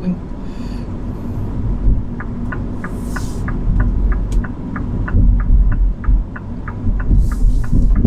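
Car turn-signal indicator ticking steadily, about three ticks a second, for several seconds inside an electric hatchback's cabin, over the low rumble of road and tyre noise.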